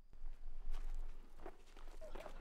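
Footsteps on dry bush ground, a few soft scuffing steps spread through the two seconds.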